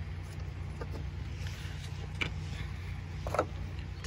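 A steady low hum, with a few faint clicks and taps about 1, 2 and 3.5 s in as the plastic cap of a car's low-side A/C service port is unscrewed by hand.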